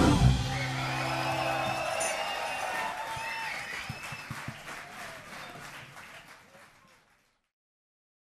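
A live band's final chord ringing out for about two seconds, then the concert audience applauding and cheering, dying away about seven seconds in.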